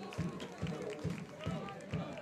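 Stadium match ambience: faint distant voices from players and crowd over a regular low thump, a little more than twice a second.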